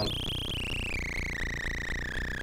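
Jolin Lab Tabør Eurorack synth module's raw, unmodulated output: a high whistling tone that steps down in pitch over the first second and then holds steady, over a fast, even low pulsing.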